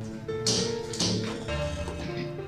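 Background film-score music with sustained notes, broken by two sudden loud hits about half a second apart near the middle.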